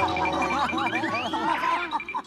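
A young woman laughing loudly, open-mouthed, among overlapping studio voices, with background music holding low notes underneath.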